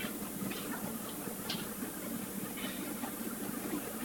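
Room tone: a steady low hum with a few faint, brief sounds over it.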